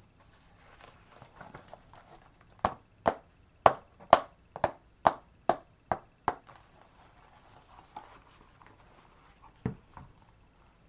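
A pair of leather Ugg loafers knocked together heel to heel: about nine sharp clacks at a little over two a second, with one more clack near the end. Softer handling rustle comes before them.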